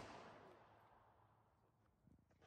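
Near silence, after a loud sound fades out in the first split second.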